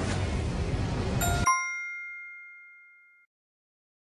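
A single bell-like ding sound effect about a second in, with several clear ringing tones that fade out over about two seconds. It marks the end of a quiz countdown and the reveal of the answer. A steady noisy background stops suddenly as the ding sounds.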